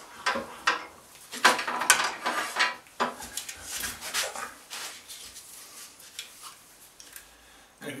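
A wooden log being taken out of a wood lathe: knocks, clinks and scrapes of wood against the lathe's metal parts, busiest in the first three seconds, then a few quieter handling sounds.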